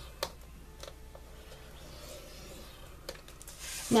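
Faint scraping and rustling of cardstock being scored and moved about on a plastic scoring board, with a light tap just after the start and another about three seconds in.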